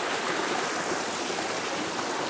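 Shallow rocky forest stream with small cascades, water running steadily over the rocks.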